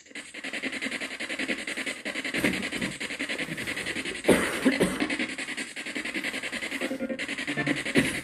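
Choppy radio static from a ghost-hunting spirit box sweeping through stations: a rapid, steady stutter of noise with brief snatches of broadcast sound, loudest about four seconds in, cutting out for a moment near the end.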